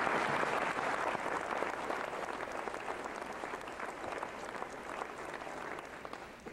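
Audience applauding in a school gymnasium, loudest at the start and tapering off toward the end.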